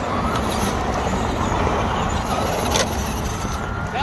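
Electric Traxxas Rustler RC stadium truck driving over dirt and gravel: a steady rushing noise of motor and tyres, with a single sharp tick a little before the end.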